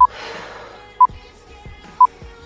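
Countdown timer beeping, one short, identical beep each second as the last three seconds of a one-minute interval tick down.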